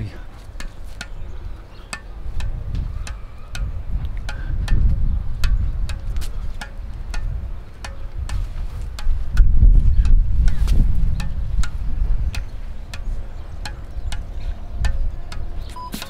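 Squash ball bouncing again and again on the strings of a squash racket, a sharp tick about two to three times a second, with wind rumbling on the microphone and swelling twice. A short beep from the countdown timer near the end.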